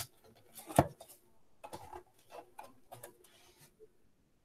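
Corrugated plastic board being handled and folded: one sharp tap about a second in, then a string of fainter clicks and rustles as the sheet is moved.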